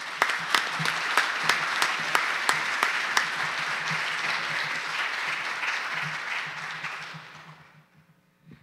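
Audience applauding in a hall, a steady patter of many hands clapping that dies away near the end.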